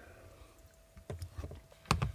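A person sipping a drink from a small glass, with a few soft, short low sounds about a second in, under a faint steady hum.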